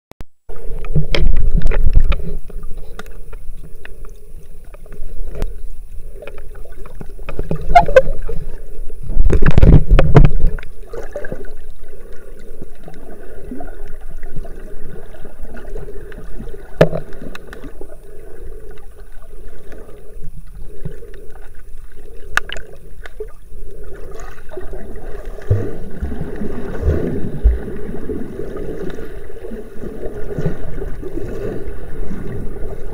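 Underwater sound picked up by a camera in its waterproof housing: muffled water noise with a low wavering hum that keeps dropping out and coming back, and scattered clicks. Heavy knocks and bumps against the housing come about a second in and again around nine to ten seconds.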